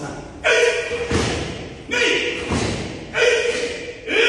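Karate kata on foam mats: three short, forceful vocal shouts about every second and a half, with dull thuds of feet hitting the mat in between, ringing in a large hall.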